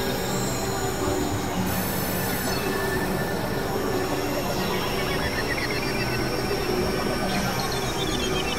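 Experimental synthesizer drone music: dense, steady layered tones with thin, high squealing tones that slide in pitch in the second half.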